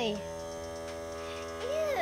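Steady background buzzing hum holding several even tones, from renovation work going on in the house. A child's voice trails off just after the start and another voice comes in near the end.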